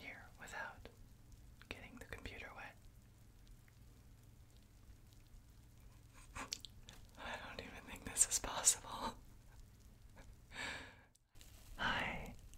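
Soft, close-miked whispering in short broken phrases, mixed with wet sounds of hands moving in bath foam and water. The sound cuts out completely for a moment about eleven seconds in.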